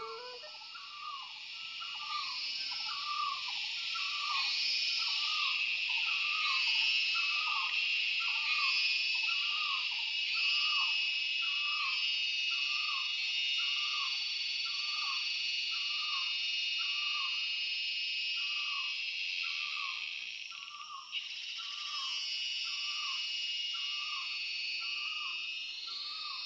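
Forest ambience: a short, falling hoot-like call repeated about once a second over a steady high-pitched chorus of insects.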